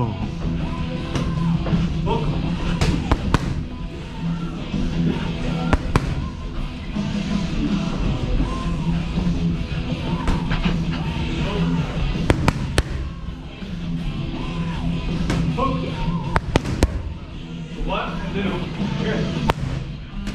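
Boxing gloves smacking pads in short combinations, sharp claps in clusters of two to four, over steady background music.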